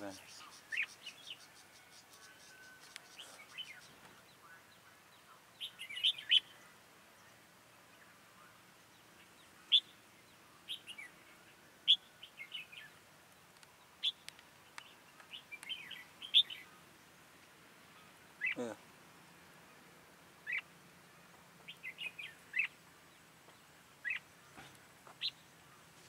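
Red-whiskered bulbuls giving short, sharp chirping call notes at irregular intervals, some single and some in quick clusters of two or three. About two-thirds of the way through, one lower sound slides downward.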